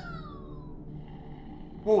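Pomsies interactive plush cat toy sounding off: one falling electronic meow-like tone near the start, then a faint steady purr as its vibrating purr runs.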